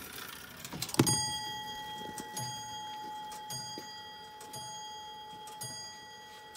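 The bell of an early tall case clock's weight-driven, iron-plated strike movement. The hammer hits the bell sharply about a second in and then goes on striking about once a second, striking the hour, with the bell ringing on steadily between blows.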